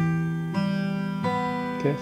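Acoustic guitar fingerpicking an E minor chord: the bass note and the first string, fretted at the third fret, are plucked together. Two more single notes follow at even spacing, and all of them ring on.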